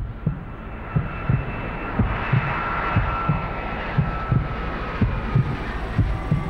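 A twin-engine jet airliner taking off: the engines give a rushing whine whose tone slowly falls. Under it runs a regular pulse of low thumps, about two a second, like a heartbeat.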